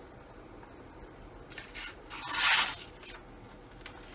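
Knife blade slicing through a sheet of paper: a short papery hiss about one and a half seconds in, then a longer, louder slicing hiss about two seconds in, and a brief rustle near the end.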